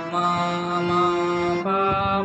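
Harmonium and a man's voice holding a note together in a sargam exercise (Sa Re Ga Ma ascending), stepping up to the next note about one and a half seconds in. The reedy harmonium tone sustains evenly under the sung note.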